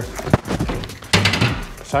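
Aluminum hatch lid set down on the aluminum boat: a light knock, then a louder metal knock about a second in.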